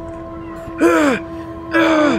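A man's voice letting out two gasping cries, each falling in pitch, about a second in and again near the end, over a steady held note of background music.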